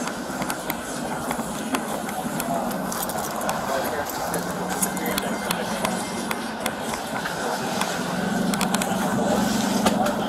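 Indistinct voices in the background over a low steady hum, which grows louder in the last couple of seconds, with scattered clicks and rustles from a hand handling seat cushions close to a body-worn camera.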